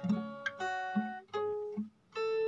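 Acoustic guitar fingerpicked: the notes of a chord plucked one after another, about six or seven in quick succession, each ringing on briefly, then breaking off just before the end.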